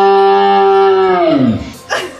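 A long, loud moo-like call held on one steady pitch, then sliding down and dying away about a second and a half in.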